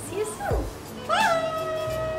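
A woman's high-pitched, drawn-out playful call, a squeaky sing-song goodbye, over light background music. A short falling vocal glide comes first, then the long held call from about a second in.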